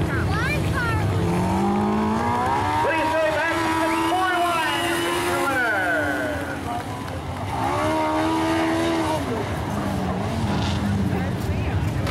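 Winged dirt-track sprint car's V8 engine revving up and easing off twice as the car rolls slowly around the track, over a steady low rumble.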